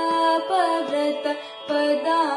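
Young woman singing a Carnatic vocal melody, her voice gliding and ornamenting between notes over a steady drone, with a brief break for breath about one and a half seconds in.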